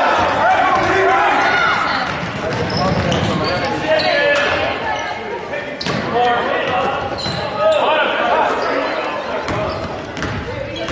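Basketball dribbling on a hardwood gym floor during a game, with players and spectators calling out, all echoing in a large gymnasium.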